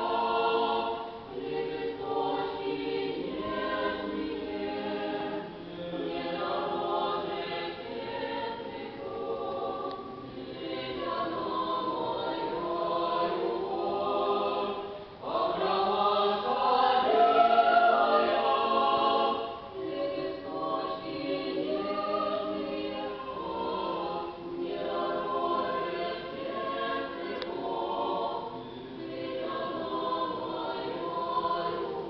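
Small mixed church choir singing Russian Orthodox sacred music a cappella, many voices in sustained harmony, swelling to its loudest passage about halfway through.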